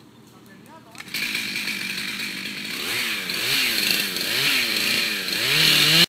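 Gas chainsaw running loudly from about a second in, cutting, its engine pitch dipping and rising again about twice a second; it cuts off suddenly at the end.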